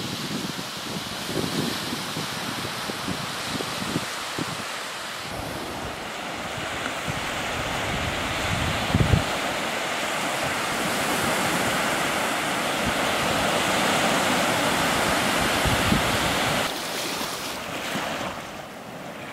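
Waves washing onto a sandy beach in strong wind, with gusts buffeting the camcorder's built-in microphone as low rumbles. The sound drops in level near the end.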